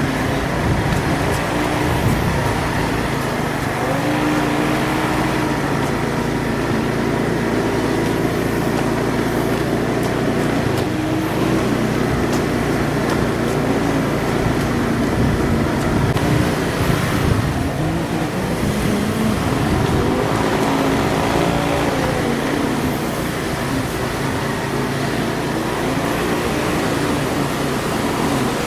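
Steady motor-vehicle noise, a continuous even drone with shifting engine pitch.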